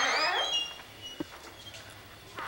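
A classroom door being pushed open: a loud scraping noise with high, gliding hinge squeaks that fades within the first half-second, then a single sharp click about a second in.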